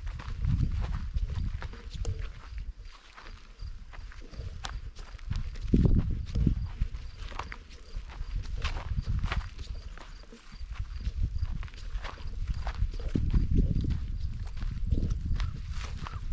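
Footsteps of a walker on a dry, dusty dirt trail: a steady run of short crunching steps, with a low rumble underneath that swells and fades.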